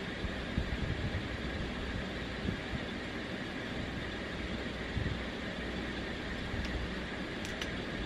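Steady background hum and hiss, with a few small faint clicks scattered through it.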